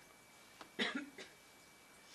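A woman coughs, one short cough about a second in, followed by a smaller second one.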